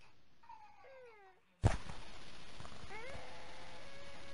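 Cat meowing: a short falling meow about a second in, then a sudden thump, and a longer drawn-out meow near the end over a steady hiss.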